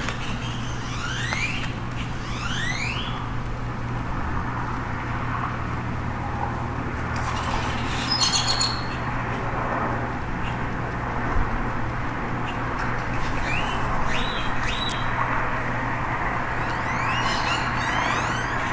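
Small birds chirping at intervals, short rising calls and a brief cluster of high notes about halfway through, over a steady low hum and constant outdoor background noise.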